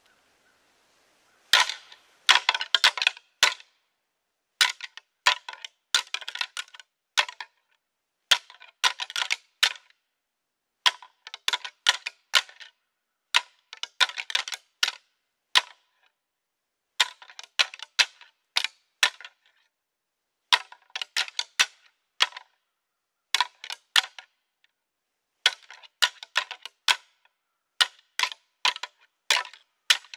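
A pair of rattling antlers clashed and ground together in short bursts of rapid, sharp clicking. There are about a dozen sequences of one to two seconds each, separated by brief pauses. This is rattling to imitate two bucks sparring and draw in bucks before the rut.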